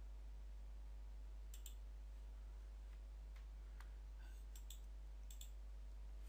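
Faint clicks of a computer mouse, several scattered through and some in quick pairs, over a steady low hum.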